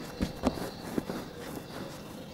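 Hands rolling and patting cookie dough into a small log on a wooden table: about three soft knocks in the first second, then faint rubbing.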